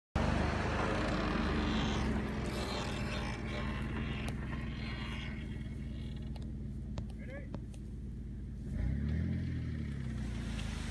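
Engine of the towing rig running at a steady idle, revving up and settling back about nine seconds in.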